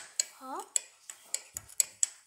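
Kinetic sand being worked by hand, making a quick series of sharp clicks and crunches, about four a second. A short rising voice sound comes about half a second in.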